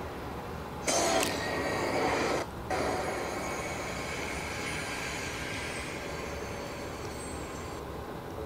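Sound effects from an anime fight scene: a louder rushing, noisy burst about a second in lasting a second and a half, then a steady hissing rumble.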